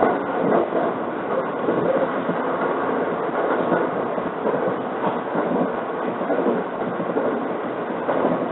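Inside a 681 series electric limited-express train running at speed: a steady rumble of wheels on the rails, with a few faint clicks.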